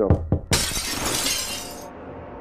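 Glass window pane shattering: a sudden crash about half a second in, then breaking glass clattering for over a second before it cuts off, just after two short knocks.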